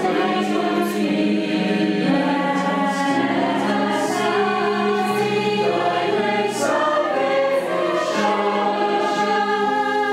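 A choir singing in harmony, holding long notes, accompanied on a digital piano.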